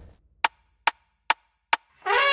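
Four short, sharp ticks, evenly spaced a little more than twice a second, with silence between them. They are a count-in at the head of a dance performance's music track.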